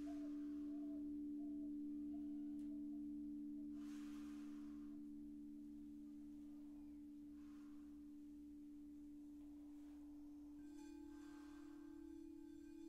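Frosted quartz crystal singing bowls ringing on in steady, sustained low tones, with soft swishing sounds about every four seconds. A little before the end, another bowl's tone joins slightly higher, as a bowl rim is rubbed with a wand.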